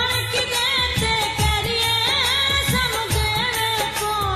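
Punjabi sad song: a female singer's wavering, ornamented melody over a steady percussion beat.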